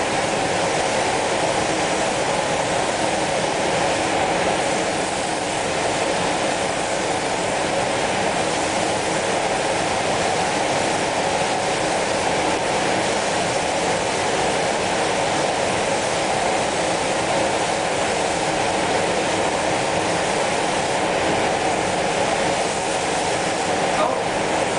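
Steady, unbroken rushing hiss of air in a spray booth as a compressed-air spray gun applies spray-on chrome, with the booth's ventilation running underneath.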